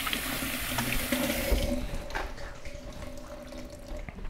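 Kitchen sink tap running while hands are washed under it; the water shuts off about a second and a half in.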